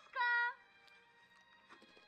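A short high-pitched call from a film's soundtrack, held briefly just after the start, over faint sustained background music.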